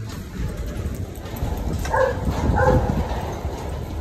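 Doberman giving two short, pitched barks about two seconds in and again just after, over a low rumble on the phone's microphone.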